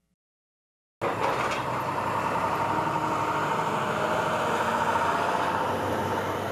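A demolition excavator fitted with a scrap grapple, running steadily with a whine over the engine noise. It comes in suddenly about a second in, after a moment of silence.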